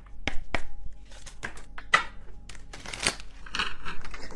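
A tarot deck being shuffled and handled: irregular crisp snaps and rustles of the cards.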